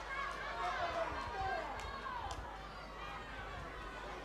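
Faint, distant voices calling and shouting across the rugby field, heard through the broadcast's field microphone, with no close voice. The calling is clearest in the first couple of seconds.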